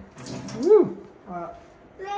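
A brief rush of water at the bench sink, followed by a person's short exclamation that rises and then falls in pitch.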